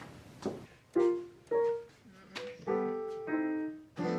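Yamaha digital piano playing about five separate chords and notes with short gaps between them, starting about a second in.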